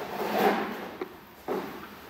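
A dog climbing onto a raised mesh dog cot: a scraping rattle from the cot, then a small click and a sharp knock about a second and a half in.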